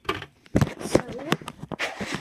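A few sharp clicks about half a second apart and a brief rustle near the end: hands handling the packaging of a pet-enclosure kit. A spoken "so" falls in the middle.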